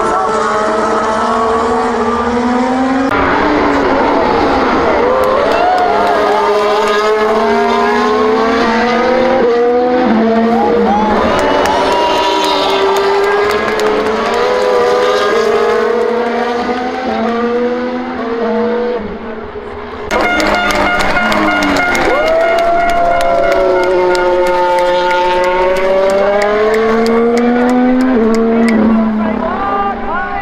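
Formula 1 cars' turbocharged V6 hybrid engines racing past one after another. The engine note keeps falling as the cars slow into a corner and climbing again as they accelerate away. It is loud throughout, with a short dip about eighteen seconds in.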